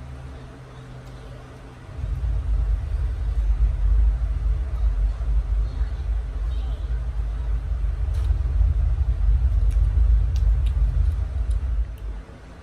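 A loud, low rumble that starts suddenly about two seconds in and stops suddenly near the end, with a few faint clicks over it.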